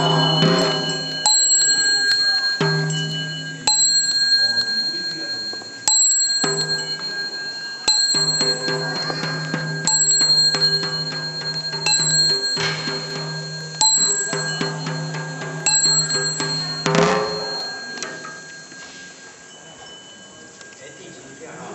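A small bell struck about every two seconds, each strike ringing on in clear high tones, over group chanting held on one steady low pitch; both stop about seventeen seconds in.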